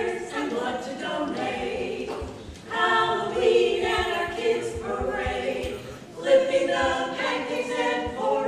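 Women's barbershop quartet singing a cappella in close four-part harmony, in sustained phrases with fresh phrases beginning about three seconds in and again just after six seconds.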